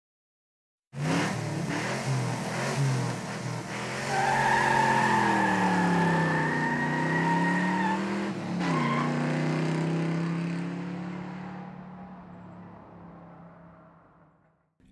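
Car engine revving, its pitch rising and falling, with a steady high-pitched whine held for about four seconds in the middle. The sound fades out over the last few seconds.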